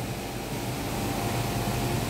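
Steady background noise, an even hiss with a faint constant hum and no distinct events.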